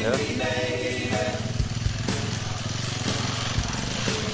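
Enduro motorcycle engine running steadily at low revs while the bike is pushed up a muddy slope.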